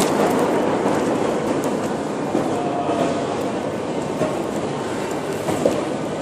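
Steady mechanical noise of a Moscow Metro station, with a few faint clicks, slowly growing quieter.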